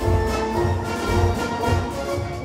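Concert wind band playing a piece with a steady low beat about two to three times a second under held brass and woodwind notes.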